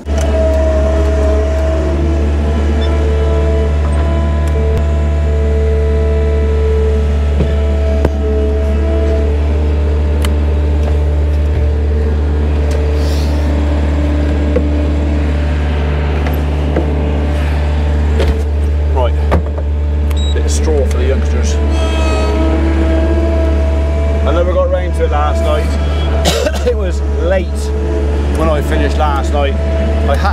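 Skid steer loader's engine running steadily, heard from the operator's cab: a loud low drone with higher whining tones that come and go as the machine works a bucket of muck, and occasional knocks.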